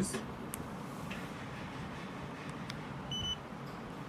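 A single short, high electronic beep about three seconds in from a Mangal AlcoPatrol PT100P breath analyzer as its held power button switches it on.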